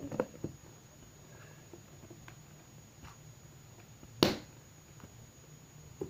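A single sharp knock about four seconds in, with a couple of faint clicks near the start, over a low steady hum.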